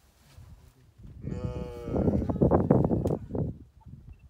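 An animal call: a drawn-out pitched cry starts about a second in. It runs into a louder, harsh stretch of pulsing calls over the next second and a half, then fades out.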